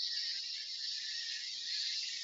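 A steady high-pitched hiss with no speech, as from the soundtrack of a video clip being played.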